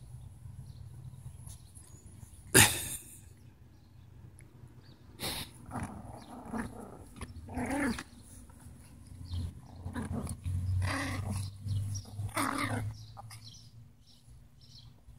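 Yorkshire terriers growling in short bouts several times as they roll and play in the grass. A sudden sharp noise about two and a half seconds in is the loudest sound.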